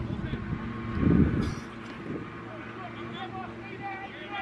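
Indistinct chatter of people on the sideline over a steady low hum, with a gust of wind buffeting the microphone about a second in.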